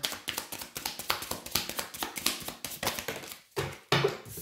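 Oracle cards being shuffled and handled by hand: a rapid run of light card clicks and taps that stops about three and a half seconds in, followed by one more tap just before the end.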